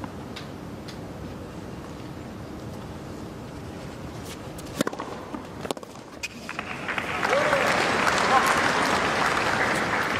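Tennis stadium crowd hushed during a point, with a few sharp racket-on-ball strikes about five seconds in. Then crowd applause swells and holds after the point is won.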